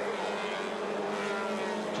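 Engines of a pack of small Rebels stock cars racing on an oval track: a steady, continuous drone of several engines with slowly shifting pitch.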